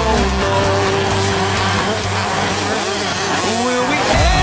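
Music playing over 125cc two-stroke motocross bike engines revving, their pitch rising and falling through the gears. The music's deep bass drops out about half a second in and comes back near the end.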